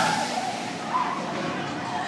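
Gerstlauer launch coaster train running along its steel track, a steady noisy rush, with a faint rider shout about a second in.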